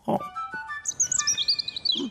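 Cartoon bird sound effect: a small bird chirping a quick series of high chirps that step down in pitch, starting about a second in, over a short run of background music notes.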